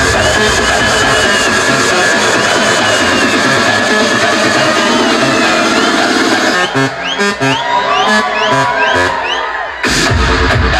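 Loud electronic dance music from a DJ set through large outdoor stage speakers. About two-thirds in, the bass and kick drop out for a break filled with repeated short rising sweeps, about three a second, and the full bass comes back right at the end.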